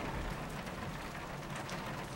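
Steady rain, heard as an even hiss with no distinct drops or strikes.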